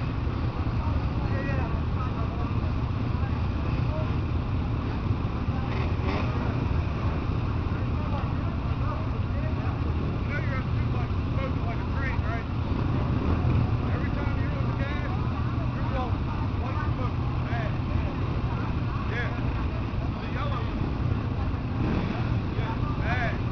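Outdoor background sound: a steady low rumble with indistinct voices and scattered short, high chirps.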